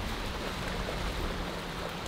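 Small surf waves washing steadily over shallow water at the shoreline, a continuous rushing hiss with a low rumble underneath.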